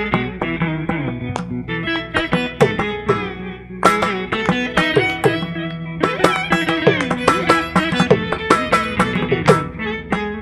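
Electric guitar playing a fast Carnatic melodic passage in raga Nalinakanti, its plucked notes bent and slid into ornamented phrases. Mridangam strokes accompany it.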